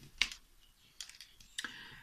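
A few light, sharp plastic clicks from diamond painting: a wax drill pen and resin drills tapping in a plastic drill tray and onto an acrylic piece. The first click, just after the start, is the loudest; two more come about a second in and near the end.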